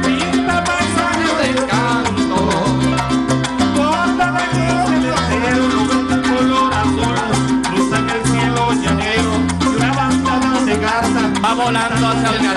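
Live Venezuelan llanero music from a string band: a stepping bass line under quick plucked-string melody, played without pause.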